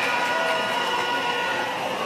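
Steady background noise of a large outdoor crowd, an even murmur with no single voice standing out.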